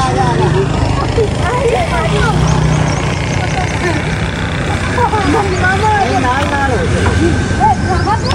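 Several people talking indistinctly over a steady low rumble.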